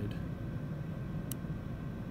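A single sharp click of a switch being flipped about two-thirds of the way in, closing the circuit so current flows through the wire. A steady low hum runs underneath.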